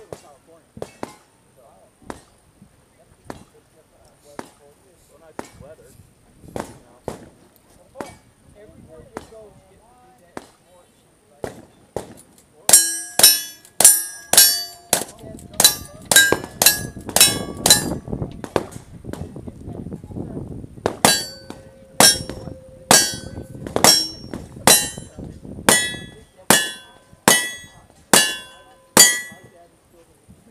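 Rapid gunshots in two strings, the first starting about halfway in and the second a few seconds later, each shot followed by the ring of a struck steel plate target; fainter, evenly spaced shots come before them.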